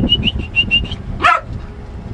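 Dachshund giving a single sharp bark a little past the middle, after a rapid run of high, even chirps in the first second.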